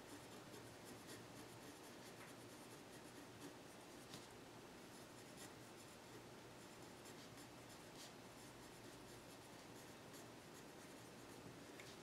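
Faint scratching of a pencil writing on paper.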